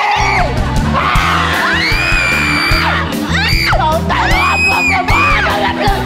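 Backing music with a steady bass line kicks in at the start, under several high-pitched screams and yells from women, the longest lasting about a second.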